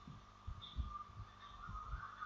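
Faint background noise: irregular soft low thuds, a few a second, over a faint steady hum.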